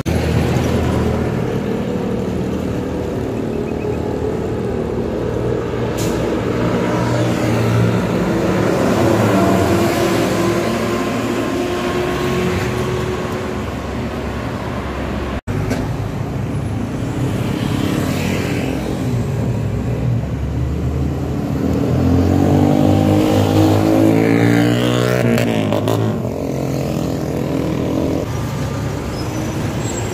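Road traffic passing close by: the engines and tyres of heavy vehicles such as buses and trucks run continuously. About three-quarters of the way in, one vehicle goes past with a falling pitch. There is a brief dropout halfway through.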